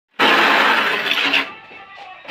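A steel notched trowel scraping tile adhesive across a wall: one long, loud scraping stroke of a little over a second, then a quieter stretch.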